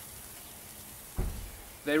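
Steaks and shrimp sizzling on a barbecue grill, a steady soft hiss, with a brief low thump a little over a second in.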